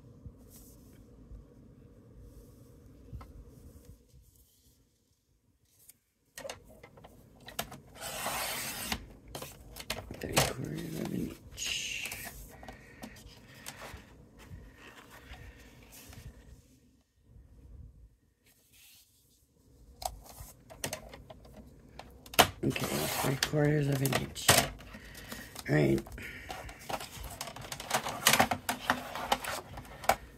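Orange cardstock being handled and slid across a scoring board, with rustling and brushing of paper in short spells, and a voice toward the end.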